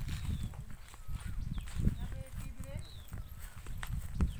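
Wind rumbling on the microphone and footsteps through dry wheat stubble, with faint voices calling in the distance.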